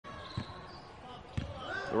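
A basketball dribbled on a hardwood court: two bounces about a second apart. A man's voice begins speaking at the very end.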